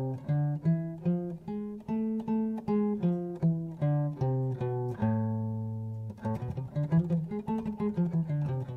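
Epiphone Hummingbird acoustic guitar played one note at a time through a harmonic minor scale, single plucked notes about three a second. One note rings longer about five seconds in, then quicker notes follow.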